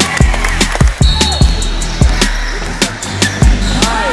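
Basketball game play on a hardwood gym floor: a ball bouncing in irregular thuds and sneakers squeaking, with a squeak near the end.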